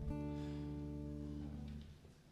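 Acoustic guitar's final chord strummed once and left to ring, fading away over nearly two seconds at the end of a song.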